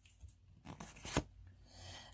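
Oracle cards being handled: a faint rustle of card stock sliding against card stock, with one sharp click a little past halfway.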